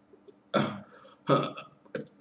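Two short, guttural vocal sounds from a deaf man signing, about half a second and just over a second in.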